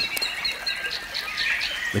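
Forest birds chirping and whistling in short repeated calls, over a faint steady high tone.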